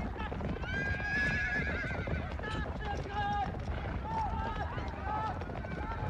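Horses neighing again and again, the whinnies wavering in pitch, over a steady clatter of hooves. The longest whinny comes about a second in and shorter ones follow.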